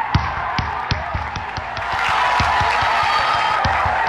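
A ball bouncing with irregular thuds, a few each second, over crowd noise and music.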